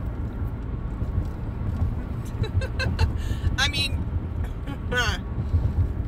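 Car cabin noise while driving: a steady low rumble of road and engine. A short laugh comes about halfway through.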